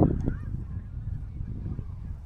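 A bird's loud honking call right at the start, followed a moment later by a shorter second call, over a low steady rumble.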